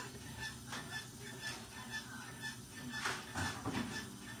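A quiet lull between spoken phrases: a faint steady low hum with a few soft breaths or mouth sounds, the clearest about three seconds in.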